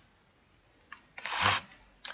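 A faint click about a second in, then a breathy, hesitant spoken "uh".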